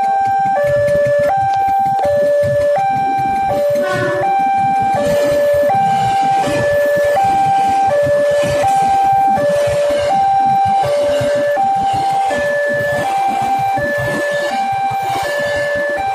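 Railway level-crossing alarm sounding a two-tone electronic warning that alternates between a lower and a higher pitch about every three-quarters of a second. Under it runs the low rumble of a KRL commuter electric train passing over the crossing.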